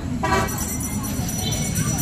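A short vehicle horn toot about a quarter of a second in, over a steady low rumble of street traffic.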